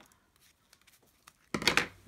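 Ribbon scissors cutting the end of a sheer organza ribbon bow: faint handling clicks, then one short, sharp snip about one and a half seconds in.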